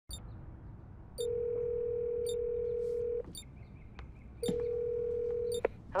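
Telephone ringback tone heard by the caller through the handset: one steady ring of about two seconds, a short pause, then a second ring cut off after about a second by a click as the call is answered.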